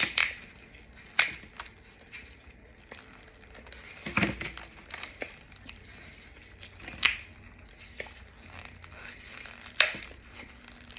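Gloved hands breaking apart a dried, bottle-shaped block of packed white powder: sharp crunching cracks as chunks snap off, with quieter crumbling in between. The loudest cracks come at the start, about a second in, around four and seven seconds, and near the end.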